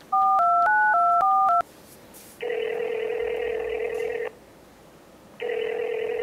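Phone dialing in touch-tone (DTMF): a quick run of about seven key tones in a second and a half, then the ringback tone of the call ringing out, two rings of about two seconds each, a second apart.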